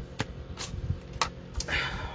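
Cardstock being handled on a paper trimmer: a few light clicks and taps as the card and trimmer parts are moved, then a brief rustle of card sliding across the trimmer base near the end.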